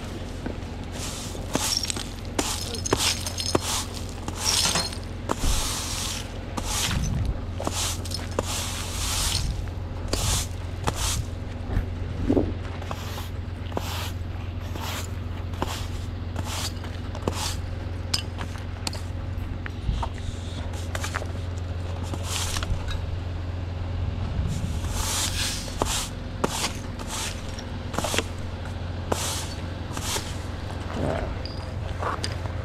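Push broom sweeping brick grit and debris across a concrete sidewalk: a long run of quick, brushy scraping strokes, with a steady low hum underneath.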